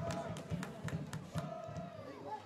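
Field-level soccer match ambience: faint distant shouts from players over thin crowd noise, with several sharp knocks like the ball being kicked.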